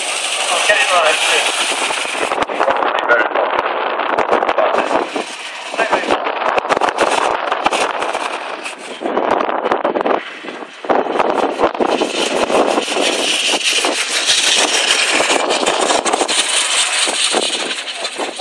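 Wind buffeting the microphone in gusts, over a two-cylinder veteran car engine running as the car drives past and away, with indistinct voices mixed in.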